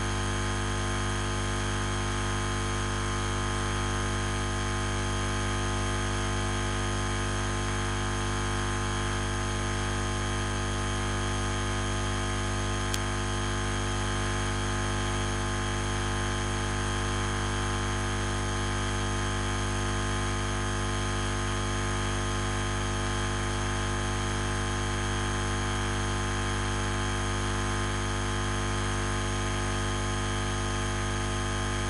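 A steady, unchanging hum with hiss, made up of many fixed tones and fullest in the deep range, with one faint click about 13 seconds in.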